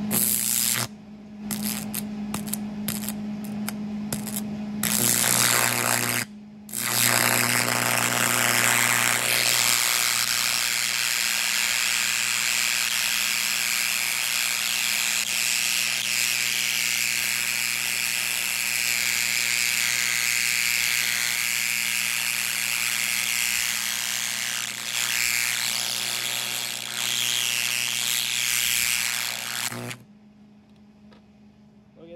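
A twin carbon arc torch's arc crackles and buzzes over a steady electrical hum from its power source. It sputters on and off several times in the first few seconds as the carbons are touched off, drops out briefly again about six seconds in, and then burns steadily at low amperage to heat thin sheet metal. It cuts off abruptly at the end.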